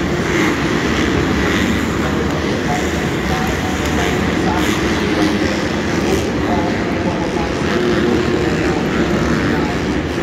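Supercross dirt bikes running laps of an indoor track, their engines making a steady din that fills the covered stadium, mixed with voices from the crowd.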